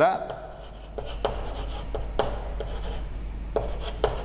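Chalk writing on a chalkboard: faint scratching with a few sharp taps as the chalk strikes the board.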